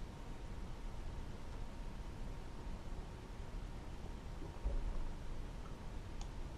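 Quiet steady room hiss, with a brief faint low bump a little before five seconds in.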